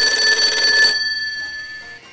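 Electric bell ringing: a fast rattling ring for about a second, then the bell tone rings on and fades.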